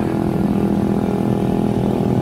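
Motorcycle engine running steadily at cruising speed, heard from on board the moving bike.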